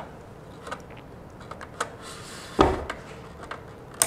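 Small clicks and taps of an RJ45 Ethernet patch cord being handled and plugged into a router's LAN port, with one louder knock about two and a half seconds in as the router is pressed against the wooden shelf.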